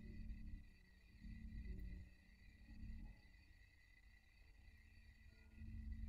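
Near silence: room tone with soft low rumbling swells every second or two and a faint steady high whine.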